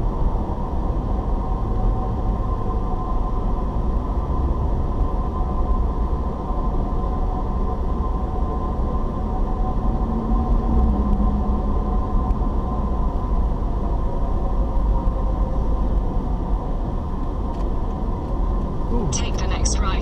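Steady road and engine rumble of a car driving along, heard from inside the cabin. A voice starts in the last second.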